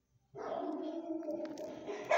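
Dogs barking, one continuous stretch beginning about a third of a second in.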